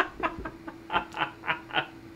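Two men laughing hard in short, breathy pulses, about three to four a second.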